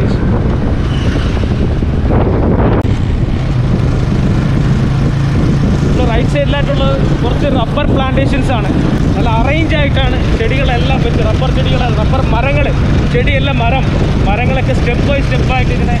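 A road vehicle's engine running steadily on the move, with a brief rush of noise about two seconds in. Voices talk over it from about six seconds in.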